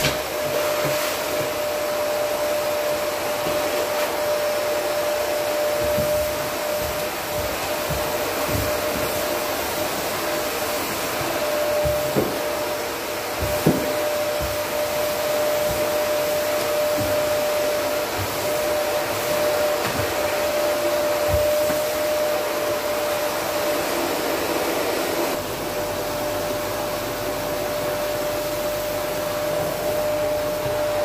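Canister vacuum cleaner running steadily with a constant motor whine while vacuuming an upholstered sofa, with two brief knocks about midway.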